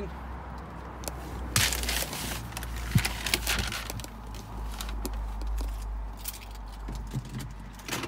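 A steady low hum in a car's cabin, with scattered clicks and rustles from the camera being handled; the clearest rustles come about two seconds in and again in the middle.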